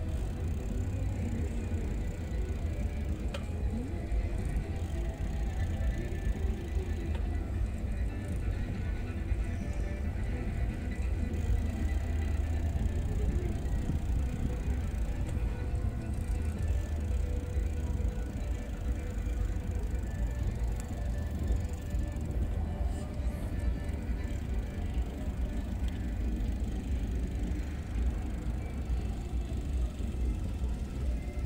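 Steady low rumble of wind buffeting the microphone and bicycle tyres rolling on asphalt during a ride, with faint music in the background.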